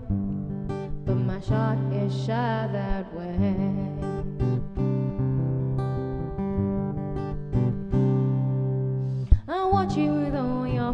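A woman singing to her own strummed acoustic guitar. The voice drops out about three seconds in, leaving strummed chords, and comes back near the end.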